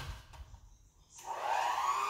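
Electric hand mixer with wire beaters switched on about a second in, its motor whine rising in pitch and then holding steady on its lowest speed. It runs on 220 V from a 110-to-220 V step-up voltage converter. A soft knock comes at the very start.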